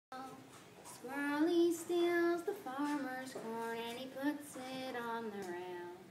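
A young girl singing an unaccompanied Appalachian folk ballad, one voice with no instruments, in long held and gliding notes that begin about a second in.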